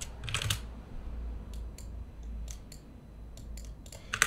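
Computer keyboard typing: a quick burst of keystrokes about half a second in, then a few single clicks spread out over a low steady hum.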